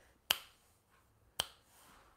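Two sharp finger snaps about a second apart, keeping a slow beat.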